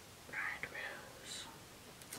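A woman whispering under her breath, faint and breathy, for about a second.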